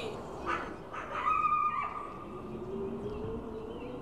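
Bird-like calls: two brief chirps, then one whistled note held for about a second, followed by a low steady tone.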